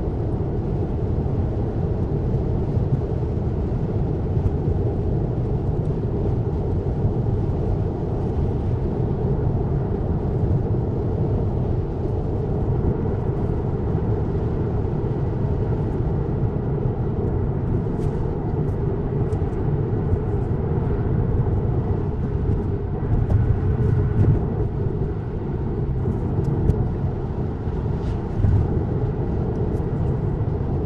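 Steady low rumble of road and tyre noise inside a Tesla's cabin at highway speed.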